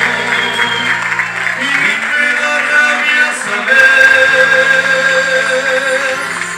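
Live song played on a nylon-string acoustic guitar and a hollow-body electric guitar, with a male voice singing. Long notes are held throughout, and a high note is sustained through the second half.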